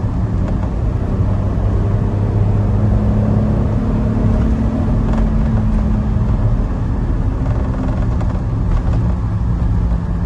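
Suzuki Every Joy Pop Turbo kei van's small turbocharged three-cylinder engine pulling steadily in gear, heard from inside the cab together with road and tyre noise.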